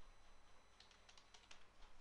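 Faint computer keyboard typing: a quick run of light key clicks, mostly in the second half.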